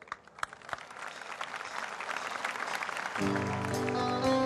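A large outdoor concert audience applauding, the clapping growing louder, then about three seconds in the band begins playing with held chords.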